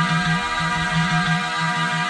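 Electronic dance music playing in a DJ set: a held synth chord over a quickly pulsing, repeating bass line, with no drum hits in this stretch.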